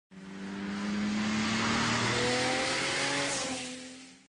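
Race car engine running at speed on a circuit. The sound fades in, holds with a slowly rising note, then fades away near the end.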